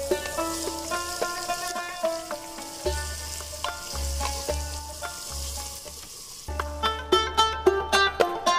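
Mutton masala sizzling as it fries in a pot, stirred with a wooden spoon, under background music of short plucked notes. The sizzle stops about six and a half seconds in and the music becomes louder.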